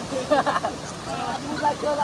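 Mostly men's voices talking, over the steady rush of a small waterfall pouring into a pool.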